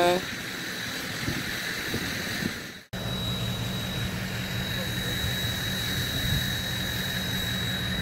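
An engine running at a steady idle, a low hum with a thin high whine over it, that starts abruptly after a short break in the sound about three seconds in.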